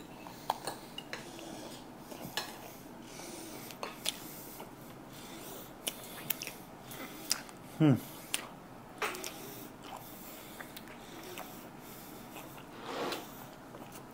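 Crisp sourdough toast being bitten and chewed close by, heard as scattered small crunches and clicks, with light clinks of hands and bread on a plate. A short falling "mmm" of a voice about eight seconds in.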